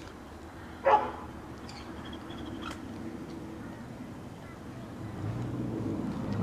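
A dog barks once, about a second in, over a faint steady background hum. Faint high chirps follow, and a low rumble rises near the end.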